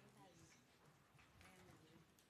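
Near silence: faint voices murmuring away from the microphones, with a few light clicks or footsteps.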